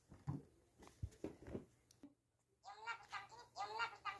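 A few faint knocks, then in the second half a high-pitched, squeaky voice in short bursts.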